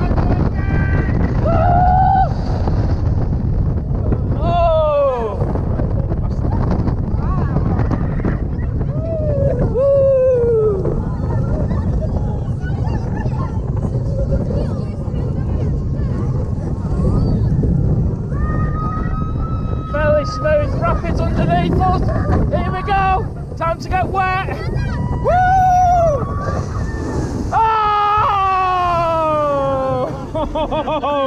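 Riders screaming on a water coaster's drops and turns, many long falling cries one after another, over a steady rush of wind and ride rumble on the chest-mounted microphone.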